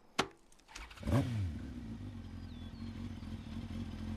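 A sharp click, then about a second in a sport motorcycle's engine starts with a short rev that rises and falls, and settles into a steady idle.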